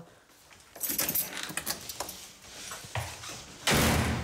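Faint rustling and small knocks of movement in a room, then a single loud bang near the end.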